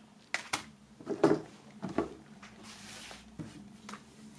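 Light handling sounds: a few short clicks and knocks as a plastic CD jewel case is moved and set down on a pile of printed paper, with a soft paper rustle about three seconds in.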